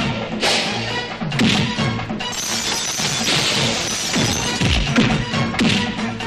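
Fight-scene film score under a run of dubbed punch and crash sound effects, with sharp hits landing about once a second.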